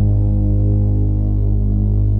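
Electronic ambient house track: one sustained low synthesizer drone, a held bass note with a fast flutter in its lowest part and no percussion.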